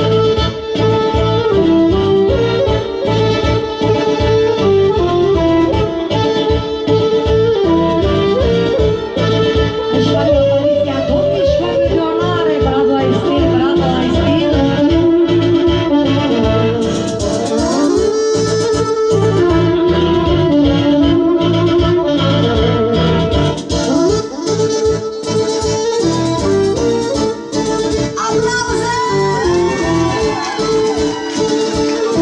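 A live band playing Romanian folk wedding music: an instrumental melody over a steady beat.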